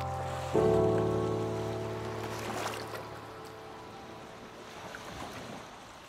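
A soundtrack piano chord struck about half a second in, ringing and slowly fading away. As it dies, a faint wash of sea and wind takes over.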